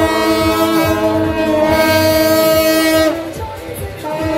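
Shaojiao, the long brass horns of a Taiwanese temple-procession horn troupe, blown together in one long held note that breaks off about three seconds in. A regular low beat runs underneath.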